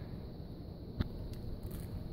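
Quiet room tone with a single short click about a second in.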